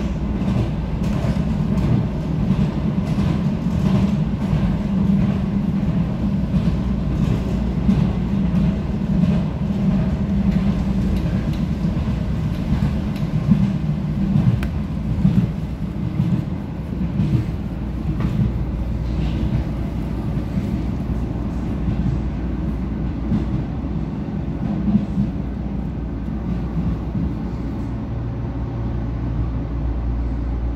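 Cabin noise of a Vienna U-Bahn Type V train running on its line: a steady low rumble of wheels on rail with faint repeated clicks, easing near the end as the train comes into a station.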